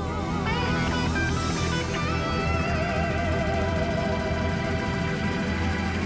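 Live rock band playing the outro of a slow ballad, led by electric guitar, with long held notes that waver in pitch over the full band.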